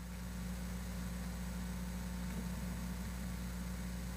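Steady low electrical-sounding hum over a faint hiss: the background noise of the meeting's audio feed during a pause in speech.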